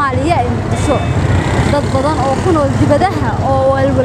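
People's voices, with a voice holding a note near the end, over a steady low rumble.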